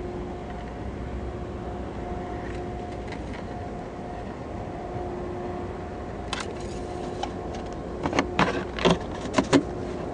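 A steady hum with a faint drone, then a run of sharp clicks and knocks in the last four seconds: hands handling parts in an open car engine bay.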